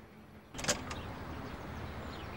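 A door latch clicking twice as a heavy wooden front door is opened, over steady outdoor background noise that comes in abruptly about half a second in.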